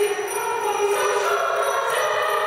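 Girls' choir singing a Christmas carol in sustained, held notes, with small bells jingling lightly along.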